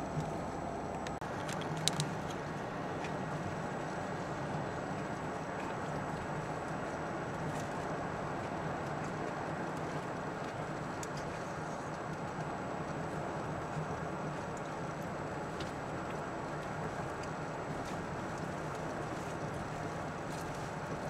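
Steady road and engine noise heard inside a moving car's cabin: tyre rumble and engine hum as it drives along a two-lane highway, with a brief click about two seconds in.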